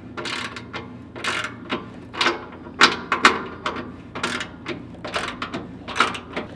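17 mm ratcheting wrench clicking in short, irregular strokes as it works a tight nut in a cramped spot between the truck's frame and oil pan.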